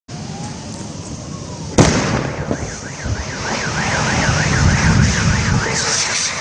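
A single sharp blast from the gas explosion, nearly two seconds in. A car alarm follows, warbling rapidly up and down about three times a second over a low rumbling roar of fire.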